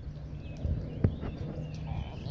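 Outdoor ambience: a steady low rumble on the microphone with faint, short high chirps and a single sharp click about a second in.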